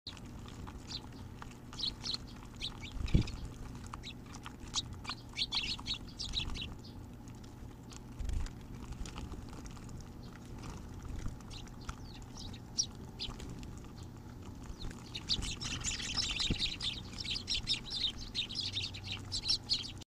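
A flock of Eurasian tree sparrows chirping: scattered bursts of short high chirps in the first seven seconds, then a dense, busy chatter over the last five seconds. A brief low thump about three seconds in, and a softer one a few seconds later.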